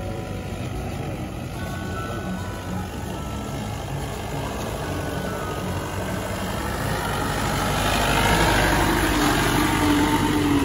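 Jeep engine running as the vehicle climbs a rough dirt track, getting louder over the last few seconds as it drives up close.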